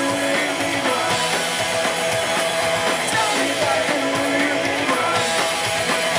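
Punk rock band playing live at full volume: electric guitars and drums through the club PA, heard from within the crowd.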